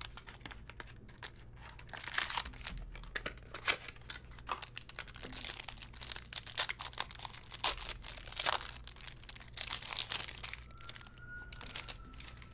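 A trading-card pack's plastic wrapper being torn open and its cellophane inner wrap crinkled by hand as the cards are taken out. It comes as a dense, uneven run of crackles and tears, busiest through the middle and easing off near the end.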